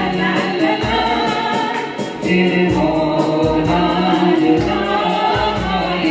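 Live band playing a Hindi film song with singing, backed by guitar, keyboard and hand drum over a bass line and a steady beat.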